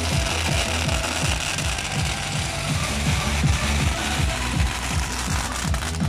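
Bass-heavy electronic dance music from a car's boot-mounted speaker system, its deep beat steady, under a loud continuous crackling hiss.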